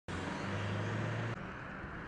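A vehicle engine running steadily with a low hum, dropping sharply in level about a second and a half in.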